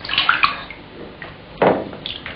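Bathwater splashing and sloshing in a bathtub as a person moves in it, with one splash just after the start and a louder one shortly before the end.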